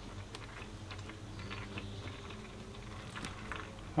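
Faint, irregular small clicks and crackles as a plastic gallon jug of hydraulic fluid, strapped upside down over a filter funnel, is handled and lowered.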